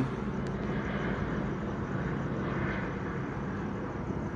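Steady low mechanical hum with a few faint steady low tones underneath, unchanging throughout.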